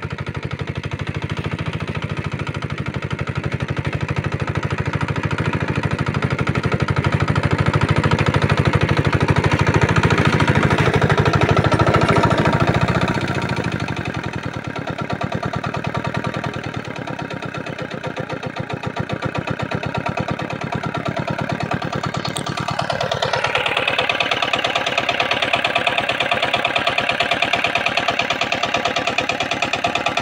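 Small engine of a walk-behind hand tractor running continuously as it tills soil, with a rattling beat. It grows louder for a few seconds, eases off about halfway through, then changes pitch and steadies again a little past two-thirds of the way.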